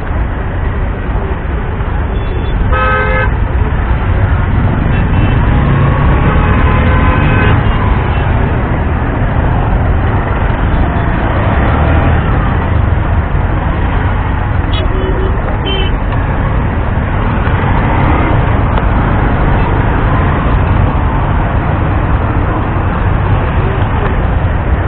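Busy road traffic with a loud, steady rumble, and a vehicle horn honking briefly about three seconds in.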